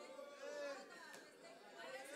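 Faint, distant chatter: several voices talking off-microphone in a large hall.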